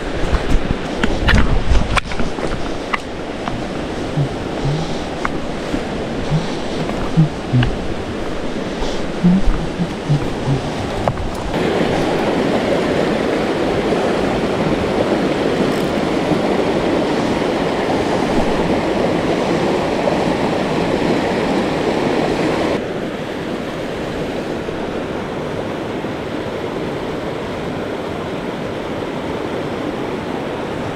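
Whitewater rapids of a river running high, a steady rush of water that gets louder about a third of the way in and drops back a little about two-thirds in. Before the water swells, a few knocks and steps on rock sound over it.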